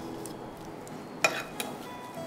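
Metal icing spatula working whipped cream on a cake, with a sharp metallic clink a little past halfway and a lighter tap just after it.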